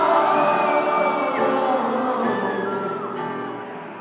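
Live band playing a slow ballad with guitar and held chords, heard from the seats of a large arena; the music dies down toward the end.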